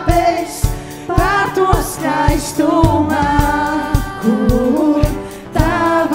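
Live worship band: women's voices singing a Latvian worship song in several parts over keyboard, guitars and drums, with a steady kick-drum beat about twice a second.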